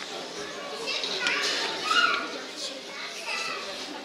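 Young children chattering and calling out over one another, with one louder high-pitched call about halfway through.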